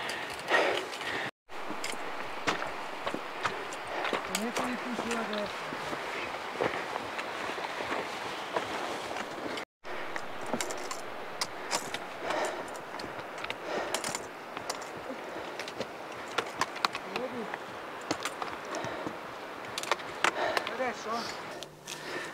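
Footsteps over loose rock on a glacial moraine, with many small clicks and knocks of stones shifting underfoot over a steady hiss, and faint voices now and then. The sound cuts out briefly twice.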